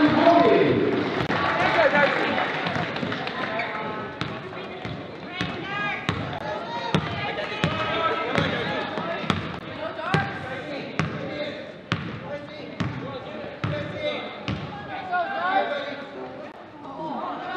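A basketball bounced on a hardwood gym floor, dribbled at roughly one or two bounces a second, over the chatter of voices. The voices are loud at first and fade over the first few seconds, leaving the bounces plain.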